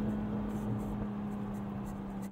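Toyota Supra's turbocharged 3.0-litre inline-six holding a steady engine note under way, heard from inside the cabin with tyre and road noise underneath.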